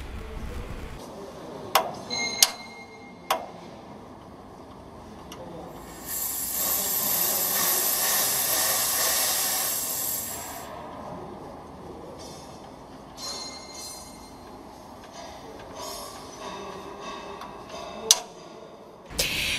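Three sharp metallic clicks in the first few seconds, then compressed air hissing out of a pneumatic filter-regulator unit for about four seconds as its knob is worked.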